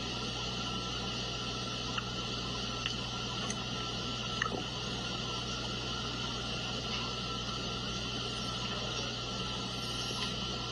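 Steady hiss and hum of an open microphone in a mission control room, with a few faint clicks now and then.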